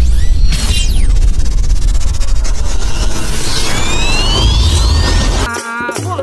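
Cinematic intro sound effect: a loud, deep bass rumble with whooshes and several rising sweeping tones, which stops about five and a half seconds in as devotional folk music begins.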